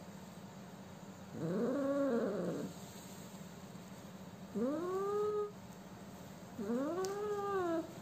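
A sick kitten meowing three times while being handled. Each cry is long and drawn out, about a second, with its pitch rising and then falling.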